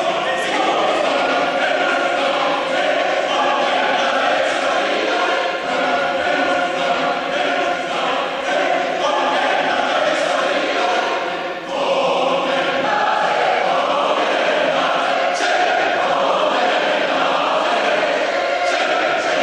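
A choir singing in a reverberant stone church, the voices holding full sustained chords. There is one brief break about two thirds of the way through before the singing comes back in.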